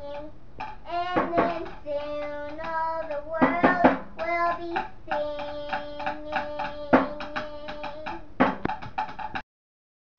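A child singing: held notes and sliding pitches over a steady run of sharp taps, like a beat being tapped out. The sound cuts off suddenly about half a second before the end.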